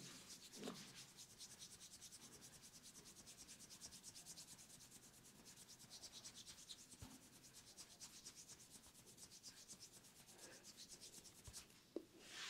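Hands rubbing quickly back and forth over skin and hair during a head and neck massage: a faint, rapid, even swishing, with a couple of soft bumps.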